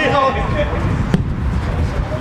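A single sharp thump of a football being kicked, about a second in, over steady low wind rumble on the microphone. A player's shout trails off at the start.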